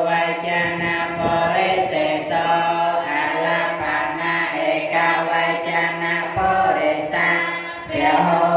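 A group of Buddhist novice monks chanting Pali in unison on a mostly level pitch. They are reciting the case endings of the masculine noun purisa ('man') as a grammar drill.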